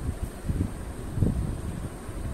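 Low, uneven rumbling noise on the microphone, in irregular pulses, like wind or handling noise; no button beeps stand out.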